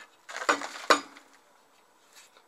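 Two sharp knocks, about half a second and a second in, of a wooden board against a drill press's metal table as the board is handled.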